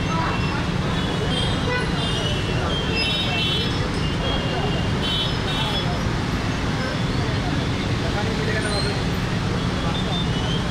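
Jammed city traffic: a steady din of idling car, autorickshaw and motorcycle engines, with many short, high horn beeps, most of them in the first half.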